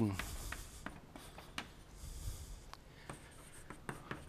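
Chalk writing on a blackboard: faint scattered taps and short scratching strokes of the chalk.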